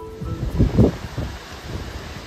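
Strong gusting wind buffeting the microphone with a deep rumble, its loudest gust a little under a second in, over a steady rush of wind through trees and bushes.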